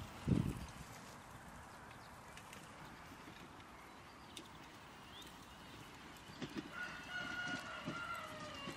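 A single long animal call, high and steady and then falling away, begins about seven seconds in. A short low thump comes just after the start.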